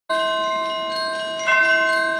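Percussion ensemble playing ringing, bell-like mallet-percussion tones that sustain and overlap, with a fresh stroke about one and a half seconds in.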